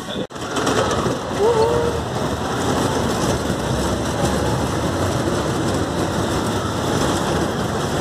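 Steady rushing noise of a moving amusement-park ride picked up on a phone's microphone, with a brief dropout just after the start.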